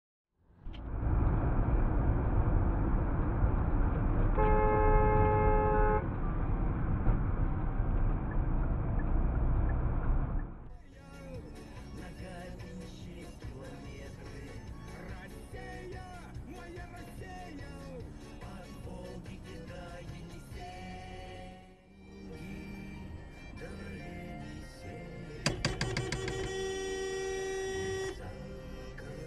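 Burst water main shooting a tall jet of water into the air, heard as a loud, steady rushing roar, with a car horn sounding for about two seconds partway through. The roar cuts off about ten seconds in and quieter music follows.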